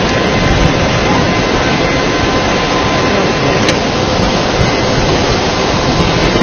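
Loud, steady roar of a muddy flash-flood torrent rushing down a street.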